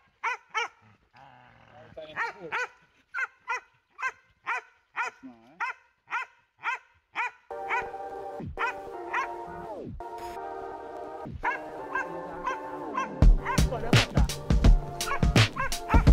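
Hunting dogs barking in a steady run of sharp barks, about two a second, at the hole where the agouti has gone to ground. About halfway through, background music comes in and covers the barking, and near the end a heavy beat joins it.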